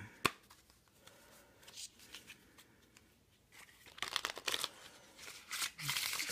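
Thin, plastic-coated playing cards being handled and flicked: one sharp snap just after the start, a quiet stretch, then a quick run of papery clicks and rustles in the last two seconds as the cards are riffled and bent.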